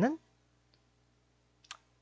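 A man's speech breaks off just after the start, then near-quiet room with one short click about three quarters of the way through.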